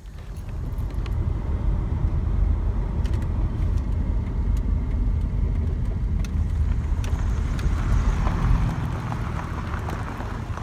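A van driving, heard from inside the cabin: steady low road and engine rumble, with a brighter hiss building near the end.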